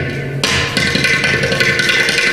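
Ghatam (clay pot drum) played with rapid finger and palm strokes over a steady drone. The strokes break off briefly at the start and resume about half a second in.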